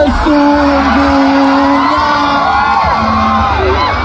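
A voice holds one long sung note over the PA, about two seconds, while the crowd whoops and cheers over a steady music bed.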